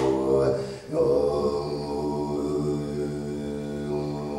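A man's voice chanting a wordless, mantra-like drone: a low, steady held tone that breaks off briefly about a second in and then resumes.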